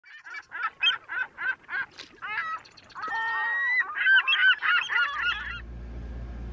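Honking bird calls: a quick run of about three calls a second, then a long held call and a busier stretch of calling. A low steady hum comes in near the end.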